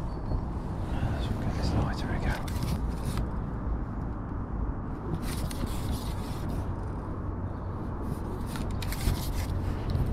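Steady low rumble on the body-worn camera's microphone, with scattered light scrapes and clicks from a carbon fishing pole being handled.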